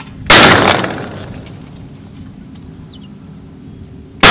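Over-and-under shotgun firing one shot at a clay target about a third of a second in, the loud report fading away over about a second.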